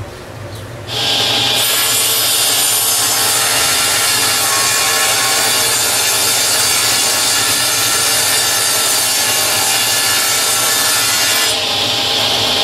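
Table saw ripping a long wooden board lengthwise to width. The loud, steady cutting sound starts suddenly about a second in and holds for about ten seconds before easing near the end.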